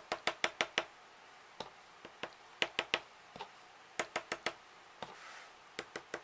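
The tip of a pen-like tool tapping dots of ink onto paper laid on a cutting mat. The taps come in quick bursts of several, with short pauses between.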